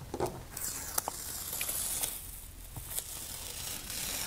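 Artist tape being peeled off cotton watercolour paper: one long tearing peel starting about half a second in and lasting close to two seconds, with a few light clicks around it.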